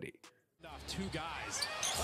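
Basketball game audio: arena crowd noise with a basketball being dribbled on the hardwood court, a few sharp bounces near the end. It starts about half a second in, after a brief silence.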